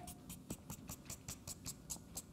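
Felt-tip marker scratching across flip-chart paper in quick, short strokes, drawing scruffy hair: a faint series of rapid scratches.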